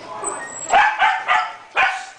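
A dog barking: four short barks in quick succession, starting a little under a second in.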